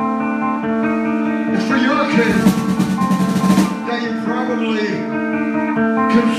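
Live rock band playing loud and amplified: guitar and bass hold sustained notes while a singer yells into the mic. A dense wash of drums and cymbals comes in about two seconds in and lasts about a second and a half.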